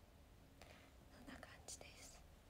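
A woman's faint whispered speech, a few murmured words under her breath starting about half a second in, over near-silent room tone.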